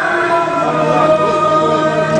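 A group of voices singing a hymn in chorus, with long held notes.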